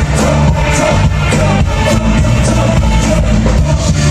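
Kwaito dance music with a steady beat about twice a second and heavy bass.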